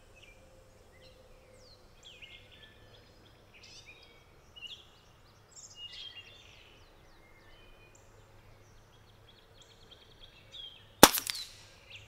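Small birds chirping and calling in short phrases, then about eleven seconds in a single sharp report from a .22 Brocock Atomic XR pre-charged pneumatic air pistol firing one shot.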